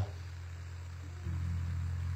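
A steady low hum that grows a little louder and fuller a bit past halfway.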